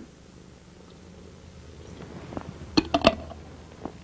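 Bubble soap poured quietly from a glass jar into a shallow metal pan, followed by a few light clicks of the glass jar being handled about three seconds in.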